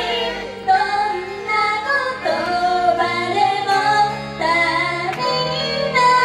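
Japanese idol pop song performed live: female vocals singing into a microphone over the backing music.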